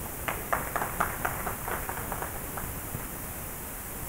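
Scattered clapping from a small audience: a dozen or so irregular claps over about two seconds that thin out and stop, over a steady hiss.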